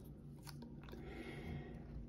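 Faint handling noise: a hard plastic graded-card slab being picked up and held in the hands, with soft rustles and a few light clicks.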